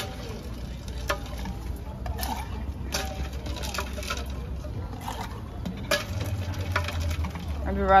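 A ladle stirring in a large glass drink dispenser of lemonade, with scattered clinks and knocks against the glass over a low steady rumble.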